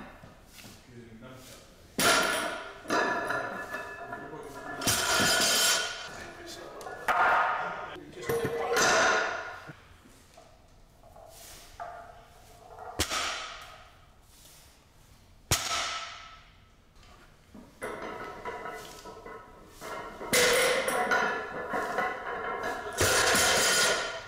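A loaded barbell with bumper plates being deadlifted for reps, heard as a dozen or so separate knocks and clanks of bar and plates, some sharp and ringing. Grunts and heavy breaths from the lifter come between them.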